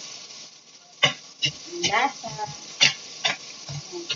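A metal ladle scraping and knocking against a stainless steel pot as garlic, onion and meat are stirred while sautéing, with a light sizzle of frying underneath. About six sharp, irregular knocks come from about a second in.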